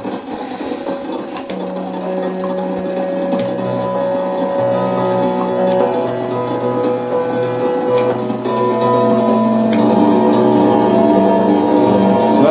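Solenoid Lyre, a prototype electric string instrument: strings kept sounding by a spinning motor-driven string fan ring out one after another as switch-operated felt dampers lift, building into overlapping sustained tones. Sharp clicks of the dampers switching come every couple of seconds. Underneath runs a constant mechanical noise, quite noisy even with nothing playing, which blurs the opening of each string.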